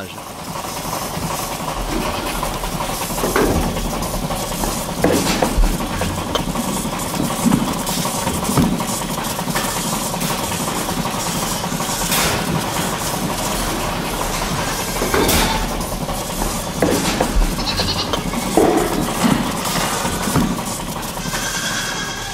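Dairy goats bleating several times, scattered calls over a steady low background hum.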